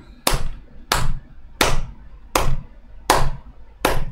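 One person's slow hand claps: six sharp claps evenly spaced about two-thirds of a second apart.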